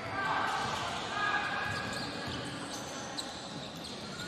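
Indoor futsal-court ambience in a large hall: a steady wash of crowd and arena noise, with short high squeaks of players' shoes on the court in the first second or so.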